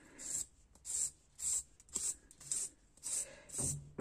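Hand nail file scraping back and forth over a sculpted artificial nail, in short, even strokes just under two a second. The strokes work the back of the nail near the nail bed flat during a refill.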